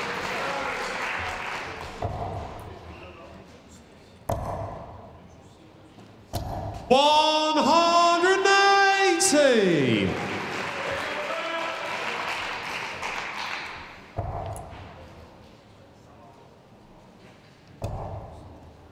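Darts thudding into a dartboard, followed by the referee's long, sung-out call of 'one hundred and eighty' for a maximum and the crowd cheering and applauding it, which dies away; two more dart thuds near the end.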